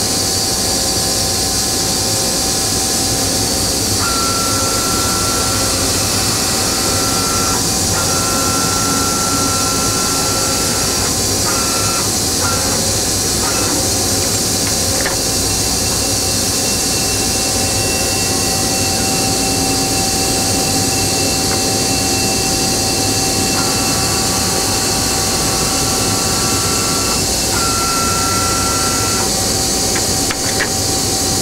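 Agie Agietron Advance 3 CNC EDM running under power with a steady hum and hiss. Over this, a higher whine starts and stops several times as the DC servomotors move the ram head over the tool-changer rack, with a few light clicks in between.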